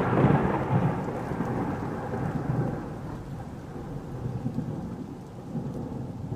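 Thunderstorm sound effect: rolling thunder over rain, loudest at the start and slowly dying away with a few smaller rumbles.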